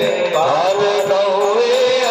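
A man singing a Hindi devotional bhajan into a microphone, long held notes that glide up and down in pitch, over a steady light percussion beat.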